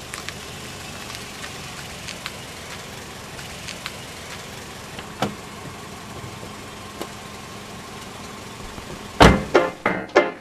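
Quiet car ambience with a steady hiss and faint clicks, and a single car-door thump about five seconds in. Near the end, a loud hit as electro-swing music starts with quick plucked and piano notes.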